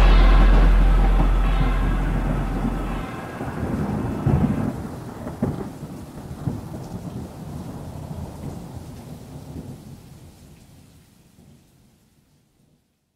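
Thunder sound effect with rain, used as a transition between songs: a deep held rumble stops about three seconds in, a couple of sharper cracks follow, and the storm fades away to silence by the end.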